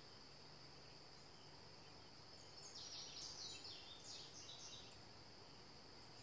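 Faint, steady high-pitched insect trill, with a short run of bird chirps in the middle.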